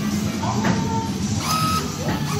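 A claw machine's bill acceptor drawing in a paper banknote, its small motor whirring briefly as the note is pulled in.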